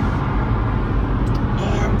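Steady road and engine noise inside a moving car's cabin, a low even rumble.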